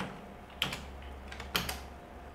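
Typing on a computer keyboard: a few key clicks, one early and then a quick cluster near the end, over a steady low hum.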